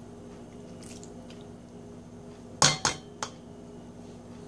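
Two quick sharp clinks about two and a half seconds in, then a lighter one, of kitchenware knocking against a stainless steel mixing bowl as a cup of sliced black olives is emptied into it. Under them is faint room tone with a low steady hum.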